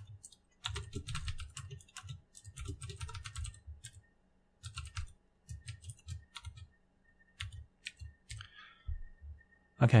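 Typing on a computer keyboard: a quick run of keystrokes in the first few seconds, then slower, scattered key presses.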